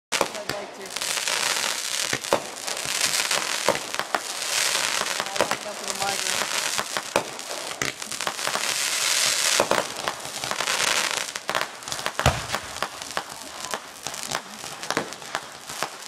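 Aerial fireworks bursting overhead: a steady run of sharp bangs and pops, with several waves of dense crackling from crackle-effect stars. One heavier, deeper bang comes about twelve seconds in.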